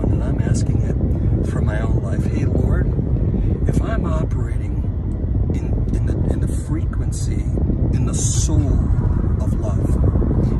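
Steady low rumble of a car's cabin noise, with a man's voice speaking now and then over it.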